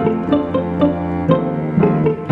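Instrumental passage of a slow song: guitar notes picked in a steady pattern over a sustained cello line, with no vocals.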